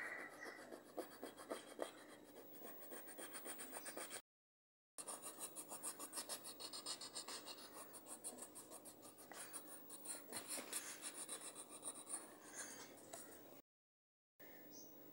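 Colour pencil scratching on paper in quick back-and-forth shading strokes, several a second. The sound cuts out for under a second about four seconds in and again near the end.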